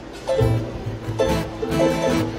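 Keroncong string ensemble starting to play about a third of a second in: acoustic guitars and small ukulele-like cak and cuk picking rhythmically over plucked cello and double bass, in a zapin song arranged in keroncong style.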